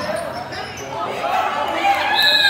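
Basketball game play on a hardwood gym floor: sneakers squeaking with players' and spectators' shouts mixed in, as a shot goes up and players crowd in for the rebound.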